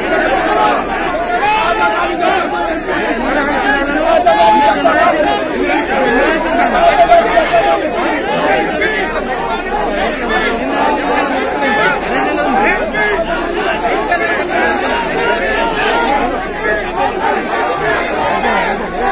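A large crowd of many voices talking and calling out over one another at once, a loud, unbroken din with no single voice standing out.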